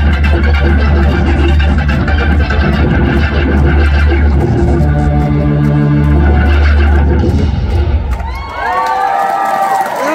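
A live rock band with organ and guitar playing loud over a heavy, steady bass, holding sustained chords. About eight seconds in the bass and chords stop, and sliding tones that rise and fall take over.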